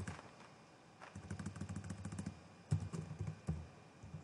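Computer keyboard typing: two quick runs of keystrokes, the first about a second in and the second shortly after, as a search term is deleted and retyped.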